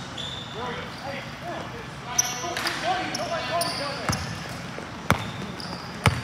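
Basketball bouncing on a hardwood gym floor during a game, with a couple of sharp bounces in the second half, amid short squeals of sneakers and players' voices echoing in a large hall.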